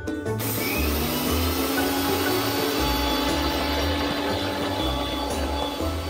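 Electric countertop blender (mixer grinder) switching on about half a second in and running steadily, its hum rising in pitch over the first couple of seconds as the motor comes up to speed, over background music.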